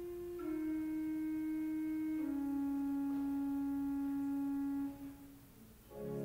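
Church organ playing a slow, soft line of single held notes with a pure, flute-like tone, stepping down in pitch twice. The last note is released about five seconds in and dies away in the church's reverberation.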